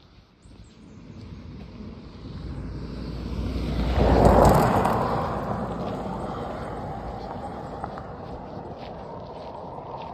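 A vehicle passing close by on the road: it grows louder over a few seconds, is loudest about four seconds in, then slowly fades away.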